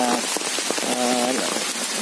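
Steady rain falling on the leaf litter and trees of a rubber plantation. A man's voice holds a drawn-out hesitation sound for about half a second, a second in.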